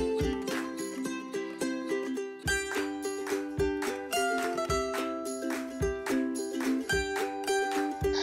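Background music: a light instrumental tune with a steady beat.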